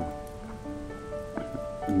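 Soft background piano music: a few single notes struck and left to ring and fade, with no voice over them.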